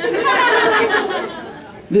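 Audience laughing together, many voices at once, dying away over about two seconds.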